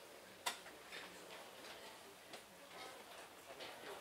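Faint room tone of a large lecture hall as an audience settles. Scattered, irregular small clicks and knocks come through, the sharpest about half a second in.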